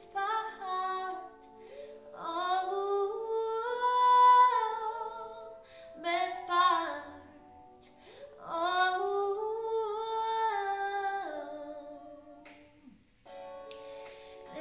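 A woman singing slow, sliding phrases with no clear words, in several long lines with short pauses between them, over soft held accompaniment chords. The singing drops away near the end before the accompaniment carries on.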